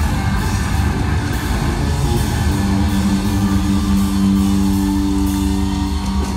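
Live amplified rock music: an electric guitar leads over the band and drums. The music settles onto a long held note about two and a half seconds in.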